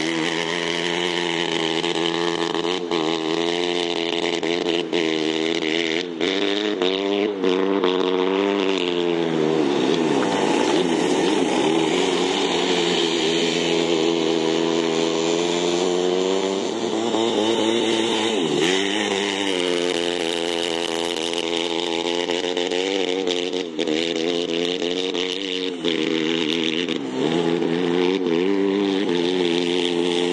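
Go-kart engine running hard, its pitch rising and falling as the revs climb and drop. The revs dip deeply and climb again twice, about a third of the way in and a little past the middle.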